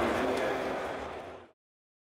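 A car engine sound that fades out steadily and ends in silence about a second and a half in.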